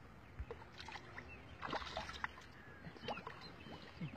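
Faint, irregular small splashes and drips from a hand dabbling and patting the water's surface at the edge of a pond.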